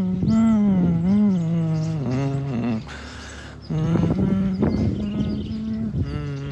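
A woman's voice vocalizing wordlessly, holding low notes with slow swoops and bends in pitch, broken by a short breathy pause about three seconds in.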